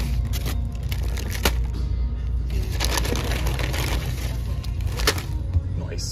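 Paper bag and paper food wrappers crinkling and rustling in several spells as the food is unpacked, over background music with a steady bass.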